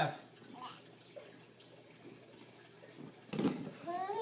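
Mostly quiet room tone with a faint short voice sound under a second in. A little after three seconds comes a short dull thump with a breathy burst, and a voice begins just at the end.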